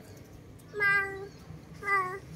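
A baby macaque calling twice: a high, steady-pitched call of about half a second, then a shorter one near the end.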